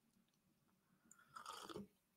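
Near silence, with one faint, short sip and swallow from a mug about one and a half seconds in.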